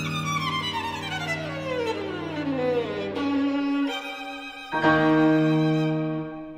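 Solo violin with piano accompaniment in a slow romantic classical piece. The violin line falls steadily from high to low over a held low note, and a new sustained chord comes in about three-quarters of the way through.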